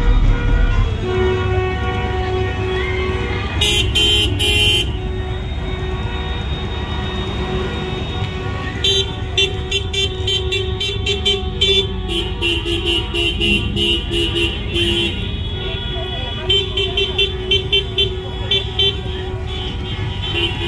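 Car horns honking in a slow-moving procession of cars: long held blasts early on, then rapid series of short toots later, over the low running of car engines.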